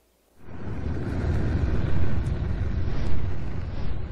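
A deep, low rumble that fades in after a brief silence and swells, with a hiss above it: a cinematic sound effect opening an animated sequence.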